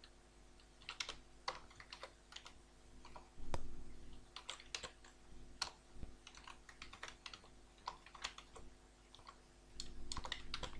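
Computer keyboard being typed on: faint, irregular key clicks in short runs, with one louder thump about three and a half seconds in.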